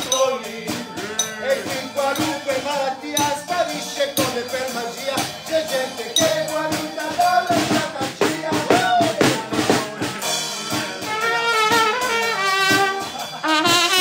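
Live street music: a man singing over a steady beat with clicking percussion, then a trumpet comes in with a melody near the end.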